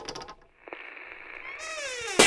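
Sound effects for an animated logo: a rapid clicking rattle that stops just after the start, a brief pause, then a steady high tone joined near the end by a pitched sound sliding downward in pitch.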